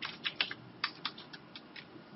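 Computer keyboard keys tapped about ten times in quick, uneven succession: keystrokes adding blank lines between paragraphs of text.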